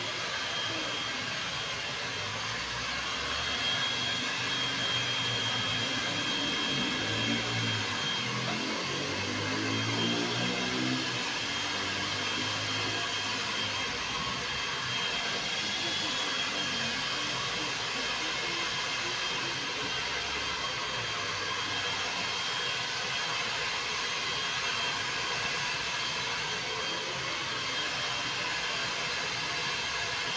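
Handheld hair dryer blowing steadily, a constant rushing noise with a thin high whine. Indistinct voices sound faintly beneath it.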